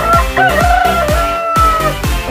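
A rooster crowing once, one long call held nearly two seconds with a wavering rise near the start, over electronic dance music with a steady beat of about two kicks a second.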